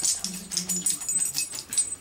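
Small plastic minifigure parts clicking and rattling in the hand as a Kre-O figure is handled close to the microphone, stopping just before the end. A faint low hum comes and goes in the first second.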